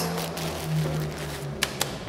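A bag of grain being handled and set down, giving two sharp ticks near the end over a steady low hum.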